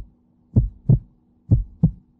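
Heartbeat sound effect used as a suspense cue during a countdown: low double thumps, two lub-dub pairs about a second apart.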